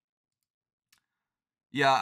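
Near silence with a single faint click about a second in, then a man's voice starts near the end.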